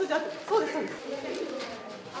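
Indistinct voices of people talking and exclaiming in a room, with some gliding, cooing-like vocal sounds.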